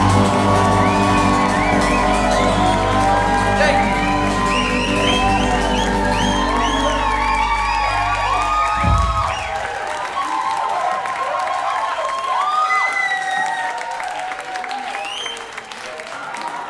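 Live rock band with drums, bass, guitars and keys holding a final ringing chord, which ends with a last hit about nine seconds in. Over it and after it the crowd cheers, whistles and claps.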